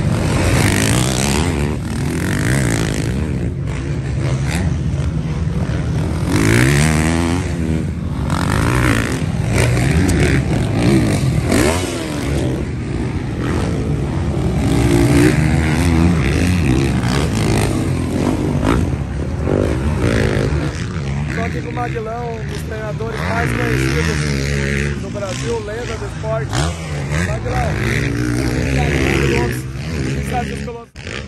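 Motocross race bikes running on the track, engines revving up and falling back again and again as the riders work the throttle.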